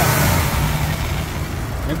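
Car engine idling rough under the open hood, misfiring on one cylinder. The mechanic traces the misfire to a bad connector on the number-4 fuel injector.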